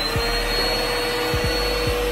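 Upright vacuum cleaner running at full speed, a steady rushing noise with a high whine, its motor just spun up after being switched on.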